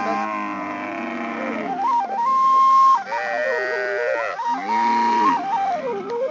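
Background music: a flute-like wind instrument playing a melody of held notes joined by sliding pitch bends.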